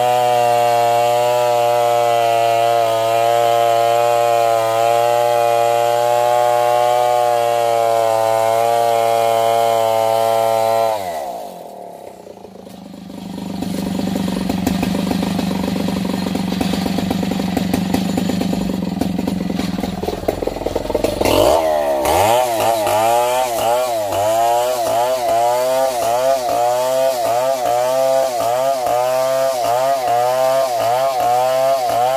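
STIHL two-stroke chainsaw at full throttle ripping a coconut log lengthwise, holding a steady pitch. About eleven seconds in the engine winds down and runs quieter for several seconds, then revs back up and cuts again, its pitch rising and falling about once a second.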